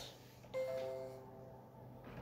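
A soft chime: a few clear, steady notes sounding together, starting about half a second in and fading out within a second.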